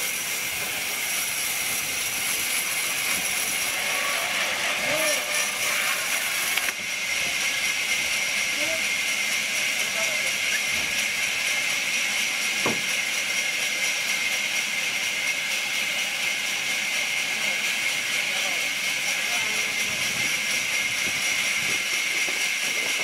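Sawmill band saw cutting lengthwise through a large log: a steady high whine with a hiss as the blade runs through the wood.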